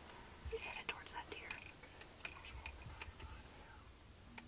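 Faint whispering, with a few soft clicks mixed in.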